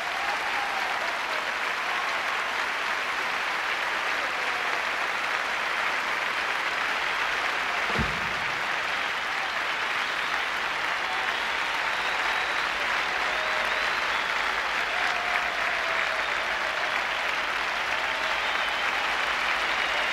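A large theatre audience applauding steadily at the end of a song. A single low thump sounds about eight seconds in.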